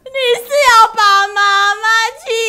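A woman's voice letting out a high, drawn-out wail in a few long held notes, a mock cry that sounds almost sung.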